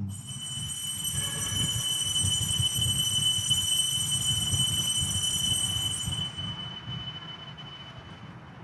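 Altar bell ringing at the elevation of the chalice after the consecration: one steady, high, clear ring with upper overtones that die away over about seven seconds, over a low rumble.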